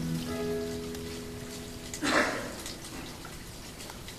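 The last chord of the song's keyboard accompaniment, several steady notes held and fading, released abruptly about halfway through. A short loud rush of noise follows, then faint scattered taps.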